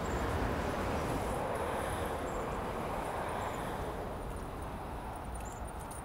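Steady rushing street noise of passing traffic, slowly fading.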